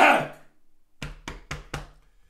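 A man coughing: the tail of one loud cough fades out, then about a second in comes a quick run of four short, sharp coughs.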